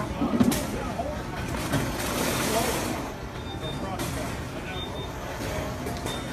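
Indistinct background voices over a steady low hum, the ambient noise of a busy security checkpoint, with a short hissing rush about two seconds in.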